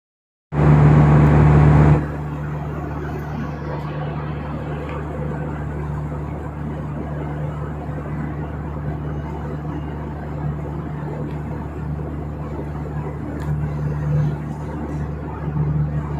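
Steady drone of an airliner's cabin in flight: jet engine and airflow noise with a constant low hum. It is louder for the first second and a half, then holds even.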